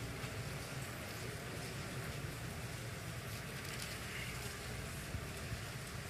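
Steady low hum of a large hall's room tone with faint, scattered rustles of Bible pages being turned.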